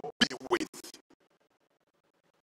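A man's voice through a handheld microphone, a short phrase in the first second that breaks off, followed by faint room sound.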